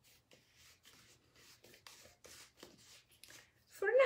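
Faint, irregular little scratches and ticks of hands handling painting supplies: a paintbrush and a small paint pot being fiddled with.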